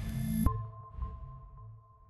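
Electronic logo-intro music: a rushing swell that ends in a sharp hit about half a second in, then a ringing tone that fades away.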